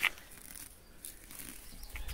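Rustling of chickweed stems and leaves as a hand picks them from a planter, with a short sharp click right at the start.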